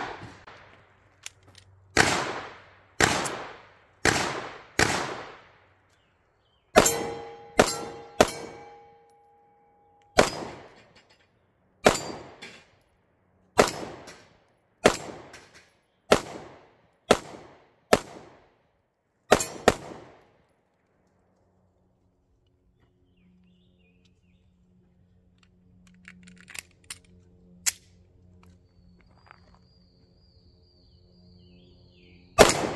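Ruger Max-9 9mm pistol fired about sixteen times in uneven strings of shots, the last pair close together. After a shot about seven seconds in, a steel target rings for a few seconds. Then only a few faint clicks.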